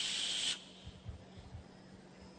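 A man's long "shhh" hiss, a vocal imitation of rain falling, cutting off about half a second in; a faint steady hum remains.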